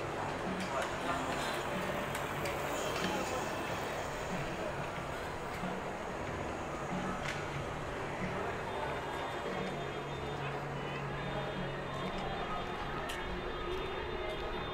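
City street ambience: a steady hum of traffic with scattered voices of passers-by. A faint high steady whine joins about two-thirds of the way in.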